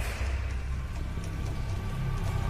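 A low, steady rumbling drone from a suspense trailer soundtrack.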